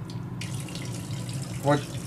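Water running from the faucet of a newly installed reverse osmosis system into a glass in a stainless steel sink on its first run, a steady hiss that starts about half a second in.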